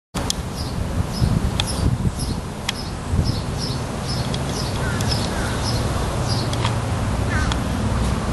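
A small bird chirping, short high notes repeating about three times a second, over a steady low rumble with a few sharp clicks.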